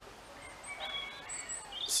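Small birds singing in the background: a few short, high chirps and whistles over faint outdoor hiss.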